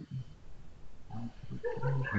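Faint, indistinct murmured speech in a small room, getting louder in the second half.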